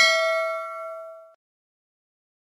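A notification-bell 'ding' sound effect ringing out with a clear, bell-like tone that fades away and stops about a second and a half in.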